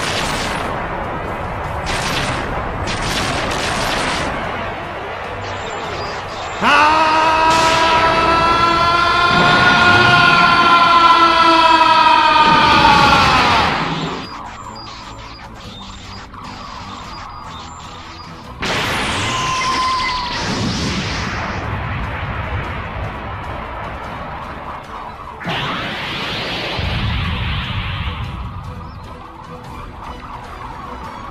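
Anime fight sound effects over dramatic background music: a run of booms and crackling blasts, then a loud long pitched tone in the middle that slowly falls in pitch and cuts off, followed by more blasts about two-thirds of the way through and near the end.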